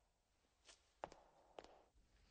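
Faint footsteps on the film soundtrack: three soft steps.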